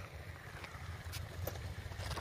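Low rumble of wind on the microphone, with a few faint crunches of footsteps on crushed-stone railway ballast.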